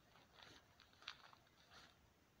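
Faint scuffing of shoes on a gritty, leaf-strewn dirt path as a person shifts stance in a slow martial-arts form, three brief scuffs, the middle one the sharpest.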